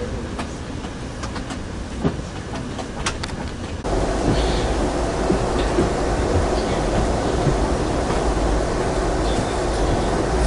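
Amtrak Coast Starlight passenger car heard from inside while under way: a steady rumble of the wheels on the rails with a few sharp clicks over the rail joints. About four seconds in, the rumble suddenly gets louder and heavier.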